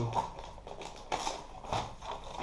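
Cardboard box being opened by hand and the paper inside handled: rustling, with a few short taps and scrapes.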